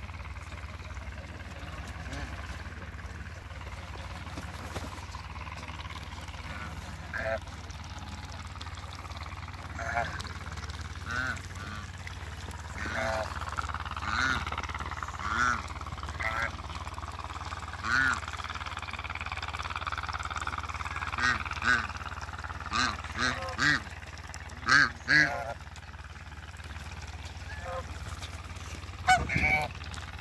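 African geese honking: short calls at irregular intervals, sparse at first and coming more often and louder in the second half, with the loudest calls a few seconds before the end. A steady low hum runs underneath.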